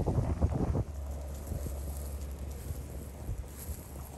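Wind buffeting the microphone. It is strongest in the first second, then settles to a steadier low rumble.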